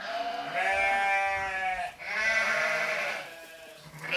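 Sheep bleating: two long, pitched bleats one after the other, the second starting about two seconds in and fading out a little after three seconds.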